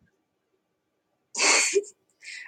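A single short, sharp burst of breath from a person about one and a half seconds in, ending in a brief voiced catch.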